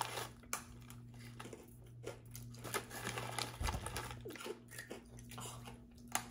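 Faint scattered crunching of freeze-dried mango pieces being bitten and chewed, with the crinkle of the plastic snack pouch being handled, over a low steady hum.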